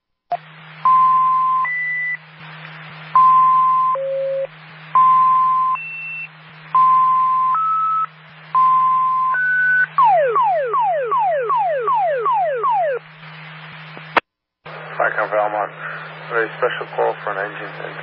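Fire dispatch radio tone alert: a string of two-tone pager tones, each pair a recurring middle tone followed by a different higher or lower one, then about nine quick falling whoops, roughly three a second. The channel cuts out briefly and a dispatcher's voice comes in near the end, with a low steady hum under it all.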